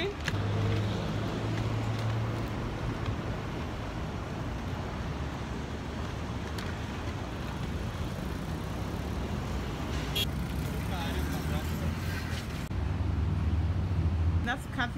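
City road traffic: a steady wash of car and bus engines and tyres, with a deeper engine drone at the start and again near the end.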